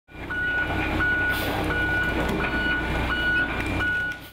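Hitachi EX165W wheeled excavator's diesel engine running, with a warning alarm beeping evenly about every 0.7 seconds over it.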